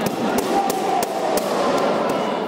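A run of about six sharp slaps or cracks, irregularly spaced over two seconds, ringing in a large hall.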